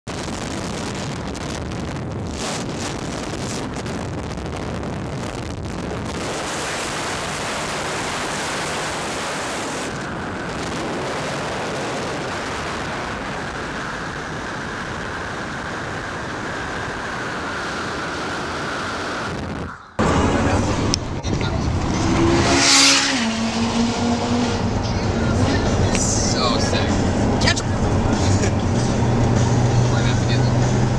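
Steady road and wind noise of cars driving on a freeway for about twenty seconds. After a sudden cut comes louder in-car road noise with a steady low engine hum, and a few seconds later a loud rush whose pitch falls as a vehicle goes by close.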